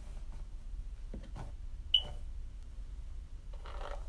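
A paddle brush stroking through a mannequin head's long hair near the end, after faint handling scrapes and a single short, sharp click about two seconds in, over a low steady hum.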